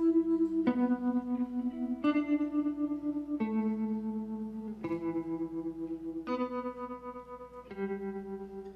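Electric guitar playing a slow song intro live: a series of sustained, ringing notes, a new one struck about every second and a half.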